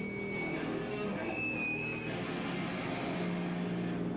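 Rock band playing live, with loud distorted electric guitars in held, ringing notes over a dense, continuous wall of sound, heard through a camcorder's built-in microphone.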